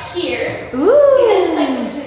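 A person's voice making a drawn-out wordless vocal sound that rises quickly in pitch and then slides slowly down.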